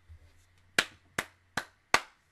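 Four sharp hand claps in an even rhythm, about two and a half a second, starting a little under a second in.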